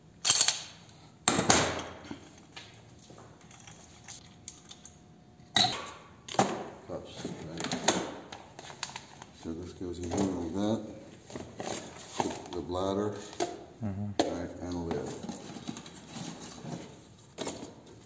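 Compressed air from a blow-gun nozzle, blasting through a paint spray gun to clear it. Two short loud blasts come near the start, followed by scattered clinks and knocks of metal and plastic parts and cups being handled.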